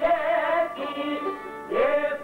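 An Albanian folk song: a man singing with his voice bending and wavering in pitch, accompanied by violin and çifteli.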